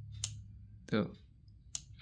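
Two sharp metallic clicks about a second and a half apart: the metal plug pins of a Samsung phone charger tapping against a hard-disk magnet they cling to.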